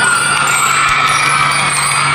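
Drum and lyre band music, the metal bell lyres ringing held notes.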